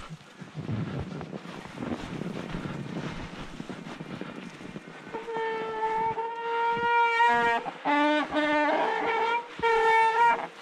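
Mountain-bike tyres rolling through snow with wind on the microphone, then from about five seconds in a loud, steady high-pitched howl of squealing disc brakes under braking on the descent; the pitch drops and wavers for a second or two, then returns to the first tone near the end.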